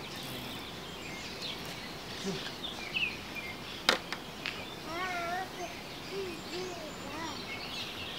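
Birds chirping repeatedly over steady outdoor background noise at a creek. A single sharp click stands out about four seconds in.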